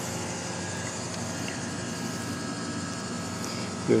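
Steady background hum and hiss, even throughout, with no distinct knocks or clicks; a man's voice begins at the very end.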